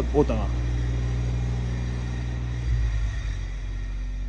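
A motor vehicle engine running nearby: a steady low rumble that swells briefly about three seconds in.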